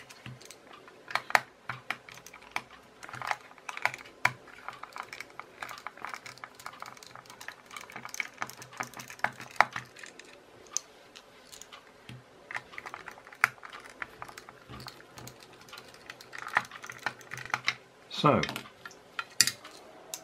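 Precision screwdriver working screws out of a plastic toy gun casing: a run of irregular light clicks and ticks of metal on hard plastic, with small plastic parts and screws clicking against the table.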